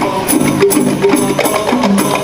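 Live qasidah ensemble music: hand percussion with jingles keeping a steady beat under a stepping melodic line.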